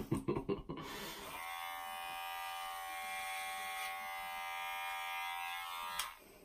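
Electric hair clippers buzzing steadily during a haircut. A few brief clicks come first, the buzz starts about a second and a half in, and it cuts off abruptly at the end.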